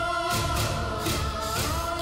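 Background score of sustained choir-like voices holding a chord, the notes gliding to a new chord about one and a half seconds in, over a soft low pulse.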